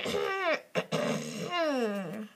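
A child's voice making drawn-out vocal sounds that slide down in pitch, a short one and then a longer, lower-ending one near the end.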